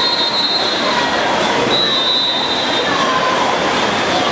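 A crowd of spectators in an indoor pool hall cheering and shouting at a sprint finish. Two high, held whistles cut through, one lasting about a second near the start and a longer one about two seconds in.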